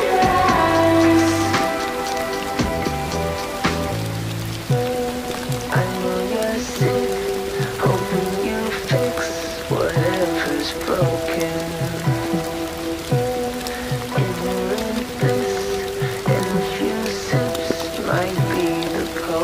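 A song with held notes and a bass line, mixed over a steady sound of rain falling.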